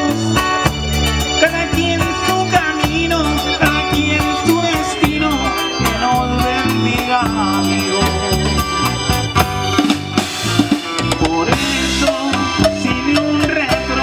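Live band playing a song, with drum kit, bass guitar, keyboard and acoustic guitar.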